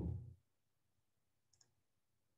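A short dull thump right at the start, then a faint double click about a second and a half later, over near silence.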